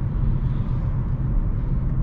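Steady low rumble of road and tyre noise heard inside the cabin of a Hyundai Kona Electric driving along at road speed, with no engine sound from its electric drivetrain.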